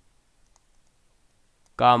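A few faint, scattered light clicks of a stylus tapping on a pen tablet while writing by hand. A man starts speaking just before the end.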